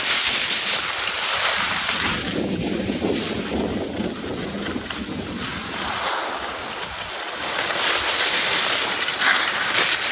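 Skis hissing and scraping over packed snow, with wind rushing on the microphone, a noisy wash that swells and fades. It is loudest near the start and again from about eight seconds in.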